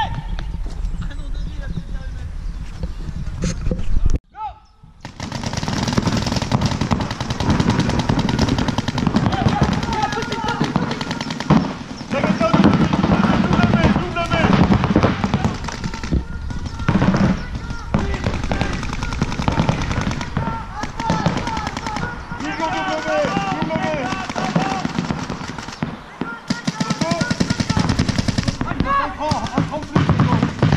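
Paintball markers firing rapid strings of shots across the field, with players shouting in the background. The sound drops out briefly about four seconds in.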